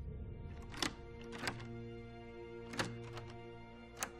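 A key turning in a door lock: a few sharp metallic clicks, the loudest about a second in and near three seconds in. A sustained, droning music bed runs underneath.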